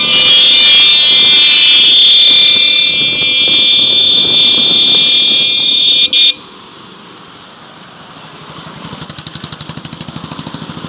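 Motorcycle horns held down, a loud steady high tone that cuts off suddenly about six seconds in. After that comes a quieter motorcycle engine running, its pulsing beat growing louder near the end.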